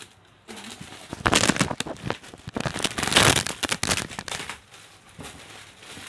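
Plastic wrapping and styrofoam packing crinkling and rubbing as they are pulled off a boxed amplifier, in two loud spells, about a second in and again around three seconds in.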